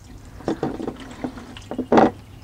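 Engine oil gushing from the oil pan's drain hole into a plastic drain pan, the pour starting about half a second in, with a sharp knock just before the end.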